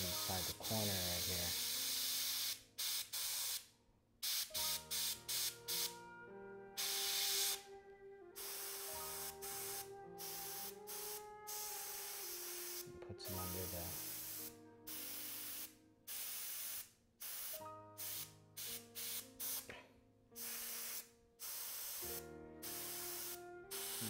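Iwata Eclipse HP-BCS bottom-feed airbrush spraying paint in short on-off bursts of hiss, some lasting a second or two and others quick taps, as it lays light highlight touch-ups.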